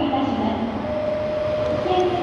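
Nankai 8000 series electric train approaching along the track as it runs through the station without stopping, a steady rail running noise with a few held tones.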